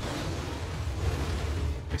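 Cartoon sound effect of a sustained rushing blast of wind with a deep rumble, as an attack strikes a tree stump; it cuts off sharply at the end.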